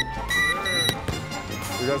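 Garrett handheld security metal-detector wand giving two short high-pitched alarm beeps in quick succession, followed by a sharp click.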